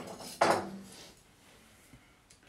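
Kitchenware knocked against a hard surface: one sharp clatter about half a second in that rings out briefly.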